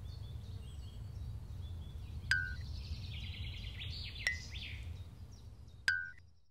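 Outdoor ambience track: birds chirping over a steady low rumble, with three short bright pings at roughly two-second intervals.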